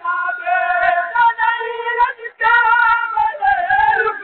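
A noha, a Shia mourning lament, chanted by a voice in a long wavering melody with no instruments, with a short break between phrases about two seconds in.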